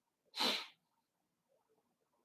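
A single short, sharp burst of breath from a person, about half a second in.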